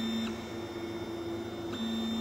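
FDM 3D printer running mid-print, its stepper motors whining as the print head moves. The steady hum jumps to a higher pitch about a third of a second in and drops back near the end, as the head changes its moves.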